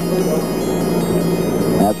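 Steady hiss and rushing noise of an old launch-control countdown broadcast recording, with a constant low hum underneath, in a pause between the announcer's calls.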